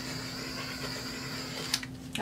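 Small handheld torch hissing steadily as it is passed over wet poured acrylic paint, cutting off near the end.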